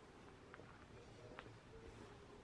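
Near silence: faint outdoor ambience, with two faint brief high sounds under a second apart.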